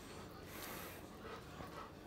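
A dog panting faintly.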